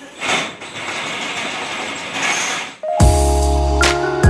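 Electric drill boring into a wall, a harsh grinding noise that rises and falls, cut off abruptly about three seconds in as background music with steady held tones begins.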